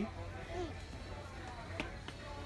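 Shop background: a steady low hum with a faint short voice, and one sharp click near the end.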